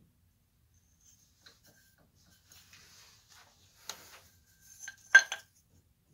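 Pressed-glass chandelier pieces being handled: faint rubbing and scraping of glass, a clink about four seconds in, then a louder, briefly ringing glass clink a second later.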